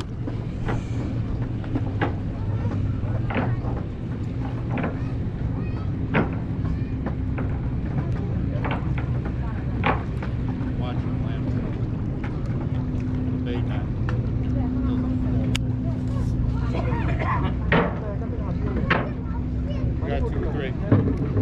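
Steady low motor drone from a boat engine, with scattered light clicks and taps over it.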